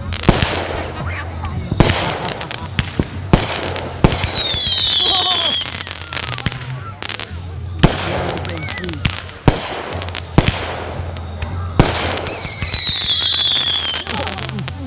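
Aerial fireworks going off: a string of sharp bangs from shells bursting overhead. About four seconds in and again near the end, a high whistle slides downward for about a second and a half.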